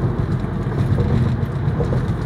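Steady low road and engine rumble heard inside the cabin of a car moving along a freeway.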